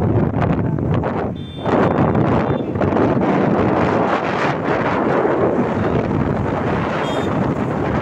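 Wind buffeting the microphone of a camera riding on a moving vehicle, over road and traffic noise, with a short lull about a second and a half in. Faint high beeps sound briefly twice.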